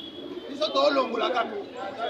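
A man's voice speaking French, calling out the next number in a list ("huit").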